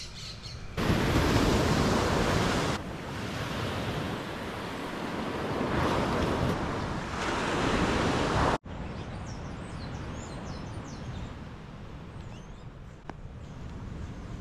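Ocean surf breaking and washing on a sandy beach, a steady rushing for most of the first eight seconds. It then cuts off abruptly to a quieter outdoor background with birds chirping.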